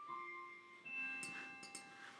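Faint background music of soft bell-like notes. A new note sounds about a second in, and each one rings on and fades away.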